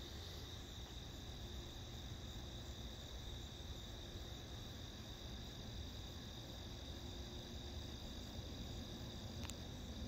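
Crickets chirping in a steady, faint, high-pitched trill that never lets up, with one soft click near the end.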